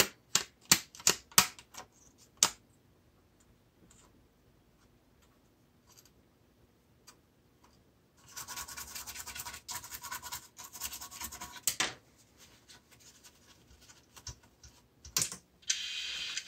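A quick run of sharp clicks and taps, then about four seconds of even buzzing whir from the cluster's new X27.168 gauge stepper motors sweeping the needles, running smooth and quiet.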